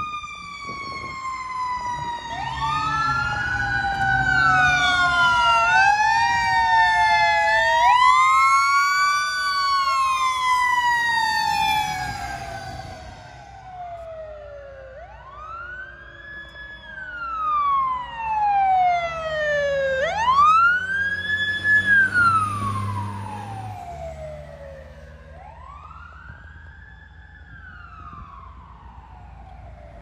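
Several fire apparatus sirens wailing at once, their rising and falling pitches crossing over one another. Later the sirens settle into slower up-and-down wails a few seconds apart, with a low steady hum beneath.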